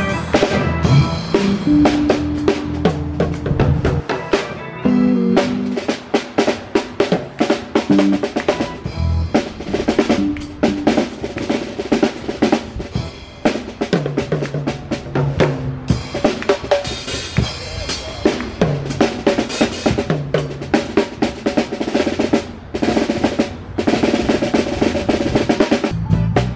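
Drum kit solo in a live jazz band: rapid snare and tom strokes with bass drum kicks and cymbals, the cymbals ringing brighter in the second half. Low sustained notes sound under it now and then.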